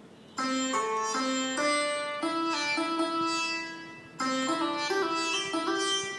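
MIDI keyboard played one note at a time through a sitar sound, picking out the song's melody in Mohana raagam. Two phrases of stepwise notes, the second starting about four seconds in.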